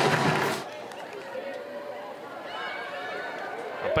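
Loud sound breaks off suddenly about half a second in, leaving quiet soccer-field ambience with faint, distant voices calling out.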